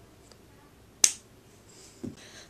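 A single sharp plastic click about a second in, as the cap of an e.l.f. $1 lipstick is snapped shut.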